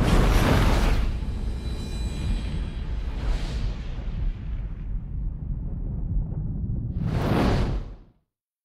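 Movie-trailer sound effects: a whoosh and boom at the start over a deep, steady rumble, a fainter whoosh a few seconds in, and a louder swelling whoosh near the end that cuts off suddenly.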